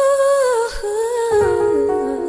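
Female pop singer vocalising a wordless melody in a ballad: a held, gently wavering note, then a falling line that steps down near the end.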